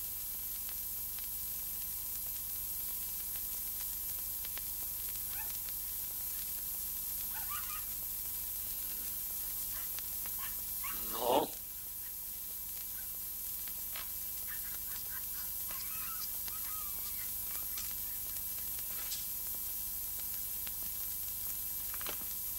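Steady hiss and hum of an old film soundtrack, with one short honk-like sound about halfway through and a few faint scratchy sounds.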